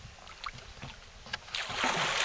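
A hooked longnose gar splashing and thrashing at the surface beside the boat, a loud burst of water noise starting about one and a half seconds in. A few light clicks come before it.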